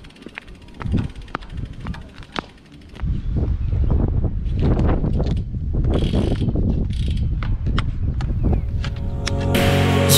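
Road bike being ridden, picked up by an action camera: scattered light clicks at first, then from about three seconds in a loud, steady rumble of wind and tyre noise on the microphone. Music comes in just before the end.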